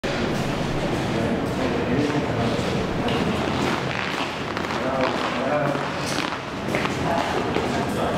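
Indistinct voices with music underneath, a steady mix with no single clear speaker.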